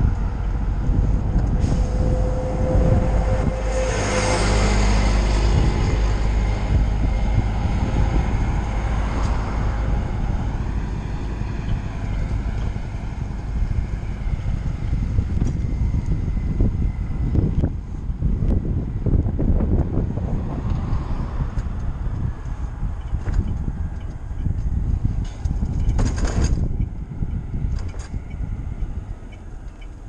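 Wind rumbling over the microphone of a bicycle-mounted camera while riding along a road, with road noise and motor traffic going by. There is a louder swell a few seconds in and a short sharp noise near the end.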